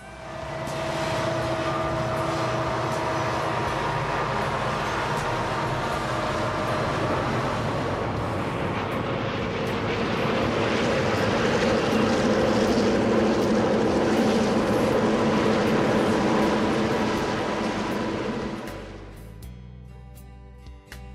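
A lashup of several diesel road locomotives running past under load, engines working with rail noise. It grows louder past the middle and fades out near the end.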